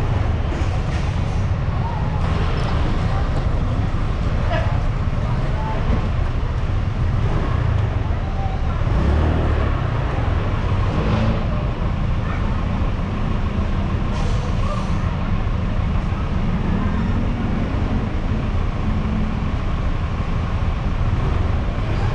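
Vehicle engine idling close by, a steady low rumble, with street traffic around it.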